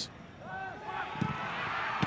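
Open-air football stadium ambience with faint distant voices shouting from the pitch, and a dull thud about a second in.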